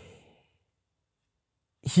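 A man's short, breathy exhale that fades out quickly, then a stretch of dead silence, then speech begins near the end.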